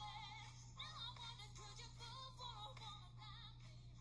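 Live pop song played back faintly: a female lead singer sings with vibrato over the backing track.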